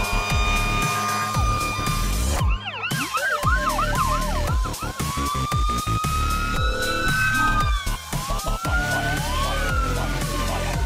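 Electronic music with a steady beat, mixed with emergency-vehicle sirens. About three seconds in comes a fast yelp, roughly four sweeps a second; from about five seconds on come slower rising-and-falling wails.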